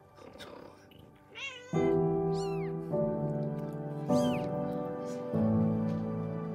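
Newborn kitten mewing: three short, high-pitched cries, each falling in pitch. Background music of slow, sustained chords enters about two seconds in and is the louder sound.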